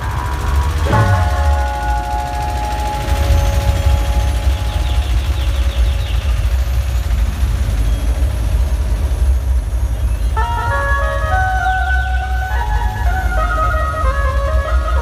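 Loud dhumal band music over a big sound system, with heavy bass drumming throughout. A chord of held notes comes in about a second in, and a melody of stepping held notes starts near ten seconds.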